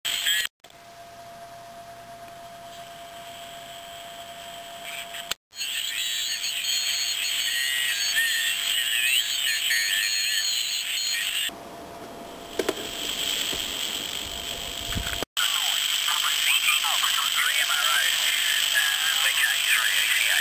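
Receiver audio from an amplified crystal set turned into an 80-metre direct-conversion receiver by a 3.5 MHz beat frequency oscillator: hissy band noise with indistinct single-sideband amateur voices. A steady whistle from a heterodyned carrier runs in the first few seconds. The audio cuts out briefly three times, and the level jumps between quieter and louder stretches.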